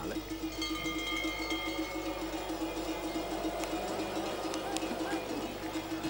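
Outdoor ski-course ambience from a television broadcast, with a steady hum running through it.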